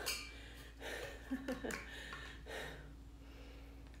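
A woman breathing audibly, with a breath right at the start and another about two and a half seconds in, and a brief wordless vocal sound about a second and a half in.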